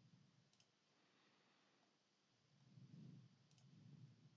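Two faint computer mouse clicks, each a quick double tick of press and release, about three seconds apart, over near silence with a faint low rumble around the third second.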